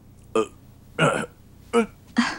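A person sobbing: three short, catching cries, each falling in pitch, the middle one longest.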